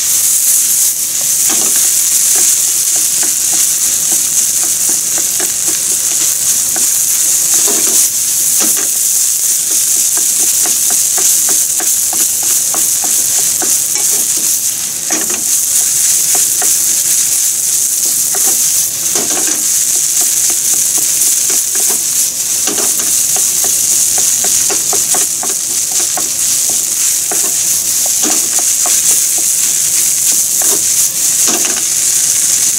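Fried rice sizzling steadily in a frying pan while it is stirred and turned with a wooden spatula. The spatula knocks and scrapes against the pan every few seconds.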